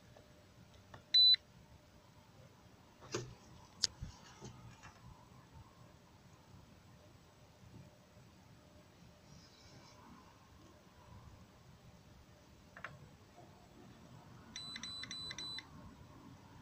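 Handheld Zurich ZR13 OBD-II scan tool beeping: one short, high beep about a second in as a key is pressed, then a few faint clicks. Near the end comes a quick run of short beeps as it finishes linking to the car's computer.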